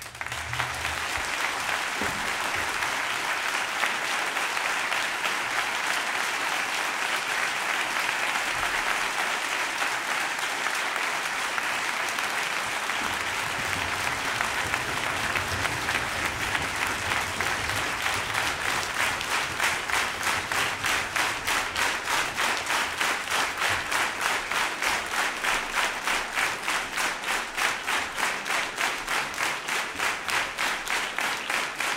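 Concert audience applauding at the end of a song, breaking out suddenly after a brief hush. About halfway through, the clapping falls into a steady rhythm, the whole hall clapping in unison.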